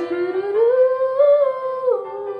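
A young woman humming a wordless melody over instrumental backing: the voice glides up early, holds high, then drops near the end.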